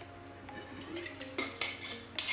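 A few sharp clicks and clinks from a water bottle and its cap being handled and closed after a drink, the loudest in the second half, over faint background music.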